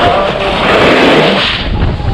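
Skis or snowboard sliding fast over packed, groomed snow: a steady loud scraping rush, with a low rumble of wind on the moving microphone.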